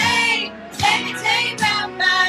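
A group of women singing a worship song together into microphones, with instrumental accompaniment, the sung phrases broken by a brief pause about half a second in.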